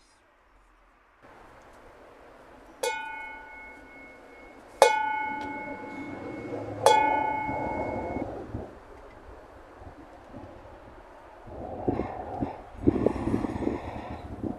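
A bell struck three times, about two seconds apart, each strike ringing on for a second or two. Near the end come rustling and low thumps.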